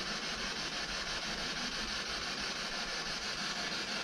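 Steady hiss of radio static from a scanning radio (a ghost-hunting spirit box) sweeping through radio frequencies.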